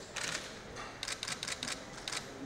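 Camera shutters clicking in rapid bursts: a short flurry just after the start, then a quick run of several clicks about halfway through.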